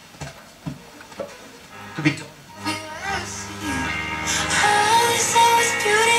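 FM radio broadcast playing through the Sanyo music centre's own speaker. After a short lull, a song with singing starts about three seconds in and grows louder.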